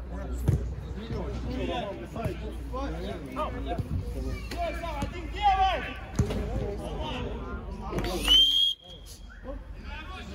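Indistinct voices on a football pitch, with a few sharp thuds of the ball being struck. A referee's whistle blows once, loud and briefly, about eight seconds in.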